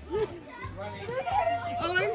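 Children's voices talking and calling out indistinctly during a game of hide-and-seek.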